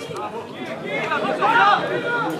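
Several people shouting and talking over one another, the shouts loudest about a second and a half in.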